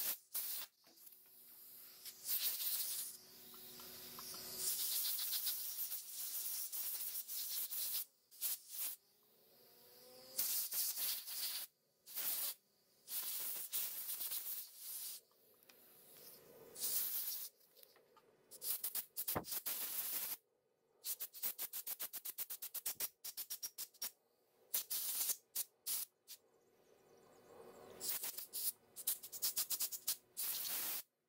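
Small metal carburetor parts being handled and fitted on a workbench: irregular clicks, taps and rattles, with rapid runs of clicks near the end and several short bursts of hiss.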